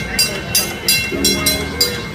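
A trolley car's bell clanging rapidly, about four sharp ringing strikes a second.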